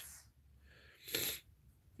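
One short, breathy puff of air from a person about a second in, with quiet around it.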